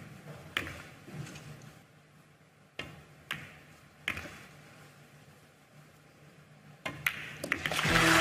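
Pool balls clacking: a few single sharp clicks of the cue and cue ball striking object balls, a second or more apart, then a quick run of clicks near the end.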